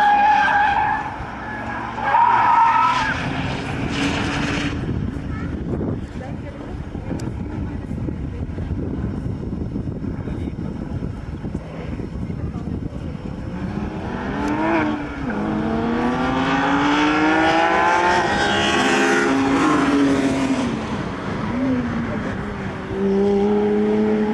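Engines of sports cars lapping a race circuit, among them a Porsche 997 GT3's flat-six on an X-ost exhaust, heard from trackside. Their pitch rises and falls through the gears, loudest in a long run of revving and shifting in the second half.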